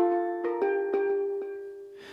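Steel pan playing a short phrase of about five struck notes that ring on and fade away toward the end.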